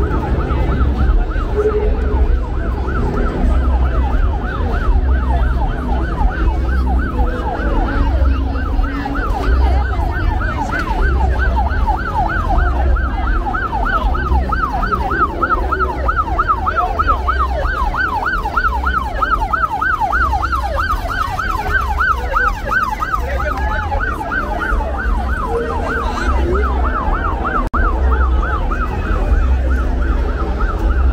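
Emergency vehicle siren on the yelp setting: a fast rising-and-falling wail, about three to four sweeps a second, clearest in the middle stretch, over crowd hubbub.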